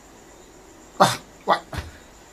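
A dog barking: three short barks starting about a second in, the last two close together.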